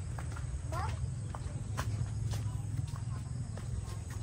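Footsteps on a path littered with dry leaves and banana-plant debris: irregular crunches and snaps over a steady low rumble.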